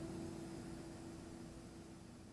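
Last strummed acoustic guitar chord of the song ringing out and dying away, over a faint steady hiss.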